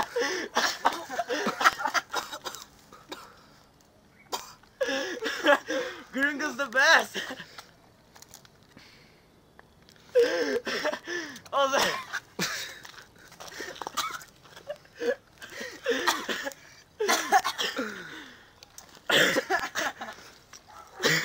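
Several young men's voices in bursts of shouting and laughing, with coughing, separated by short quiet gaps.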